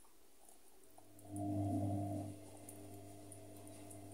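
A steady low hum that swells about a second in, holds for about a second, then drops back to a faint level, over quiet room sound.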